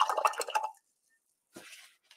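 A paintbrush being swished and tapped in a glass jar of rinse water, with small splashes and clinks against the glass that stop under a second in. Near the end comes a short soft rustle, from a paper towel.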